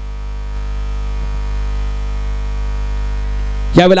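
Steady, loud low electrical mains hum in the commentary audio, with no break or change, until a commentator's voice cuts back in near the end.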